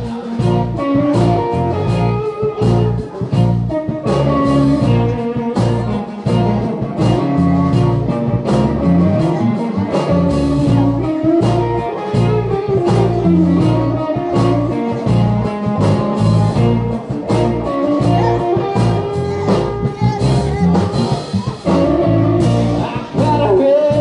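A live band playing a song with fiddle, electric guitar, acoustic guitar and bass, over a steady beat.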